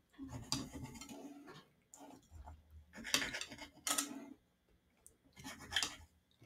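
Table knife sawing through a soft baked bun, the blade scraping on the ceramic plate beneath, in several short strokes.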